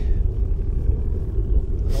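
Wind buffeting the microphone on open ice: a steady low rumble.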